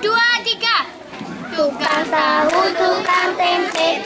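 Girls' voices singing a song together, beginning about two seconds in after a moment of talking, with long held notes.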